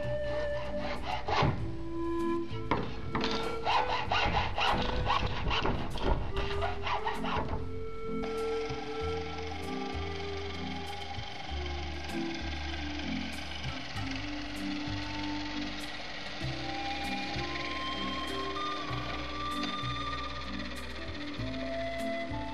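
Background music with held notes plays throughout. Over it, a hacksaw cuts back and forth through a thin rod for the first several seconds. After a cut about eight seconds in, a drill press runs steadily as a hole saw cuts holes in wooden blocks.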